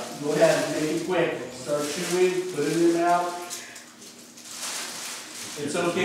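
A man speaking, with a pause of a second or two after the middle.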